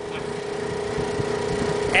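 A steady motor hum under a faint, even hiss while air from a hose is fed through a chuck into a boat trailer's tire.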